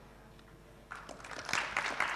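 Audience applause, starting about a second in and building, with a near-silent pause before it.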